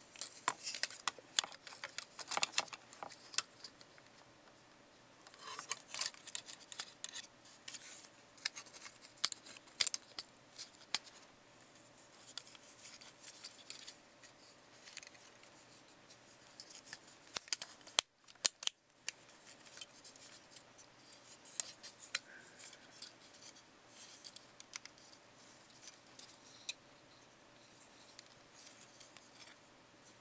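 Hard plastic parts and joints of a Transformers Generations Megatron figure clicking, snapping and scraping as it is handled during transformation into tank mode. The clicks come irregularly, in clusters, throughout.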